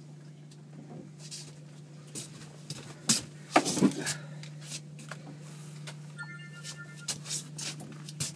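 Steady low hum of the boat's outboard motor running, with loud knocks and rubbing from the camera being bumped about three to four seconds in and a brief high rattle about six seconds in.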